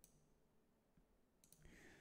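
Near silence, with a few faint clicks of computer keyboard typing near the end.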